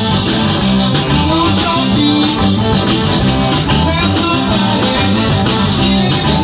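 Live zydeco band playing an instrumental passage at full volume with a steady dance beat: button accordion, electric guitars, bass guitar, drum kit and a scraped rubboard (frottoir).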